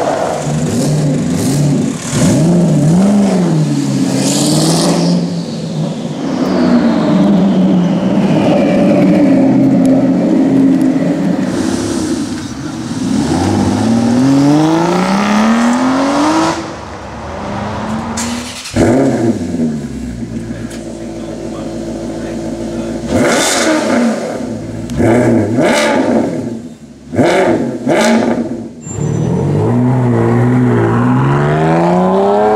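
High-performance supercar engines, a succession of cars including a Ford GT, an Aston Martin Vantage and a Ferrari Enzo, revving and accelerating hard with the engine pitch climbing and falling through the gears. A sharp crack comes about halfway through, and a series of short throttle blips comes near the end.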